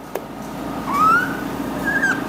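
Dry-erase marker squeaking on a whiteboard as a curve is drawn: a short rising squeak about a second in and another brief one near the end, over a steady low room hum.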